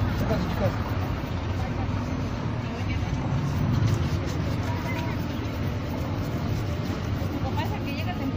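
A shoe-shine bristle brush rubbing back and forth over a leather shoe, against a steady low rumble of street traffic and background voices.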